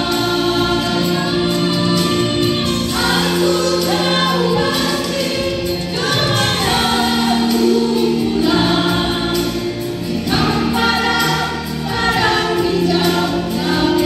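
A small group of women singing a worship song together into handheld microphones, amplified over the church sound system, in sustained melodic phrases.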